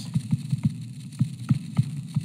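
Stylus tapping and scratching on a touchscreen while a word is handwritten: a string of light, irregular taps, about five a second, over a low steady hum.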